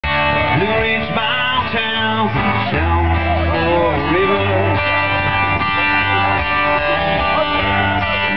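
A country band playing live, with a man singing lead over a strummed acoustic guitar and a band behind him.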